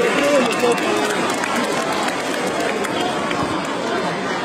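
Stadium crowd noise at a football match: a dense wash of spectators' voices, with a voice shouting in roughly the first second.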